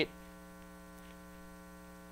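Faint steady electrical hum of several fixed tones, mains hum carried in the sound system.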